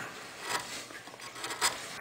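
Hand chisel paring into wood: faint scraping of the blade slicing the fibres, with short crisp cuts about half a second in and again near the end.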